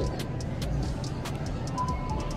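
Store ambience: a steady low hum with faint background music, broken by scattered light clicks and rattles as a cardboard donut box is handled beside a shopping cart.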